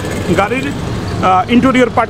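Speech: a man's voice talking in short phrases over a steady low background hum of street noise.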